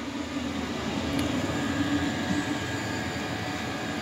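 Chinese diesel air heater running at full output, its combustion blower turned up to about 4,900 rpm: a steady whooshing noise with a faint low hum.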